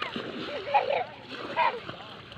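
Water splashing as a swimmer paddles through shallow sea water, with voices talking over it.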